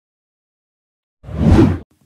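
Silence, then a short whoosh sound effect starting a little over a second in, swelling and dying away within about half a second: an edit transition from a chapter title card to the next shot.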